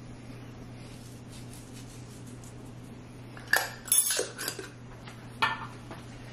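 Kitchen utensils clinking against a pot while the soup is seasoned: a quick cluster of sharp clinks about three and a half seconds in and one more near the end, over a low steady hum.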